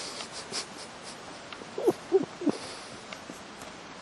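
A toddler's voice making three short hooting vocal sounds in quick succession about two seconds in, each bending in pitch. A few light taps come near the start.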